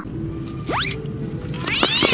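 A comic cat-screech sound effect over background music: a quick rising squeal, then a longer wailing yowl near the end, dubbed onto a cyclist's crash.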